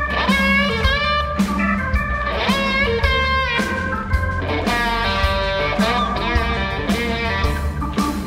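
Electric guitar solo in a live blues band: sustained lead notes with string bends, played over bass guitar and a drum kit keeping a steady beat.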